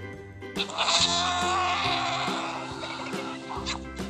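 A vulture call played as the animal's sound: a hoarse, wavering cry lasting about three seconds, starting about half a second in, over steady children's background music.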